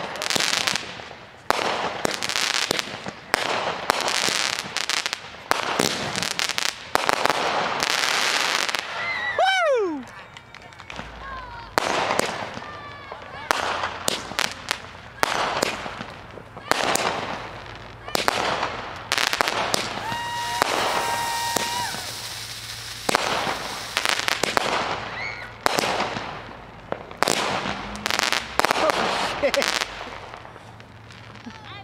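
Consumer fireworks going off in quick succession: repeated sharp bangs and crackling bursts. About ten seconds in, a whistle falls steeply in pitch, and a short held whistle-like tone sounds a little after twenty seconds.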